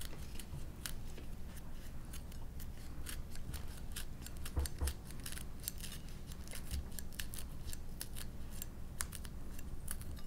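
Thai green chilies being cut up: a run of small, crisp, irregular cutting clicks, several a second.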